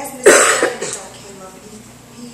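A person coughing once, loudly and close to the microphone, about a quarter second in, fading within about half a second.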